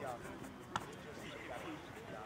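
Faint background chatter of people talking on an open sports field, with one sharp click about three-quarters of a second in.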